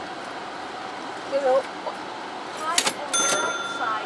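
Car idling inside its cabin at a parking pay booth, with brief voices, a quick run of clicks about three seconds in, then a steady electronic beep.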